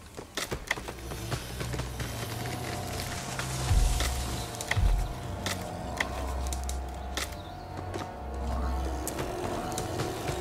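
Tense film score: low sustained drones and a held higher note, scattered with sharp clicks and cracks, with deep hits about four and five seconds in.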